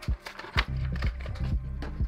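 Background music with steady low notes, under irregular crinkles and snaps of a Hot Wheels blister pack's plastic bubble and card being torn open by hand.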